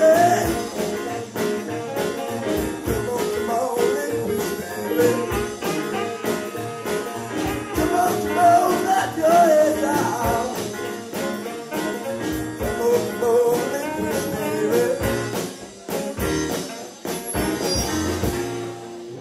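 A live soul-jazz band playing: saxophone, electric guitar, keyboard and drums under a male lead vocal. It eases slightly in loudness near the end.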